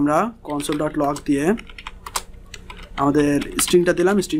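Typing on a computer keyboard: a run of quick key clicks, clearest in the middle, with a man talking over the start and the end.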